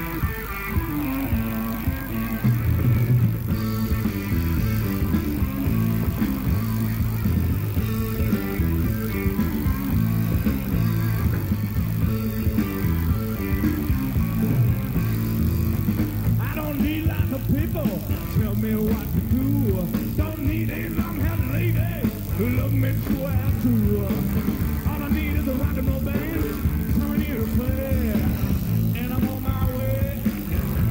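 Blues-rock band playing live, with electric guitars, bass and drums keeping a steady beat. About halfway through, a lead line with bending, sliding notes comes in over the rhythm.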